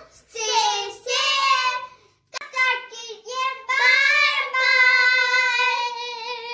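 Children singing in high voices, in three short phrases; the last ends in a long held note.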